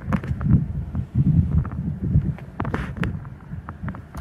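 Wind buffeting the microphone as an uneven low rumble, with a few light clicks and knocks from handling.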